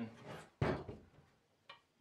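Pieces of sawn timber handled on a wooden workbench: a single wood-on-wood knock about half a second in that fades quickly, and a light tap near the end.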